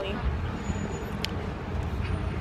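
Steady low rumble of city street traffic, with a single brief click about a second and a quarter in.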